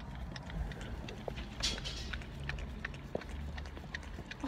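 A golden retriever licking whipped cream from a small paper cup: a run of quick, irregular licking clicks.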